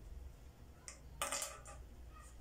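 A pen set down on a glass tabletop: a faint tick, then a brief clatter with a slight ring about a second in.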